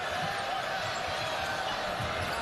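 Basketball dribbled repeatedly on a hardwood court, low thuds a few times a second, over the steady noise of an arena crowd.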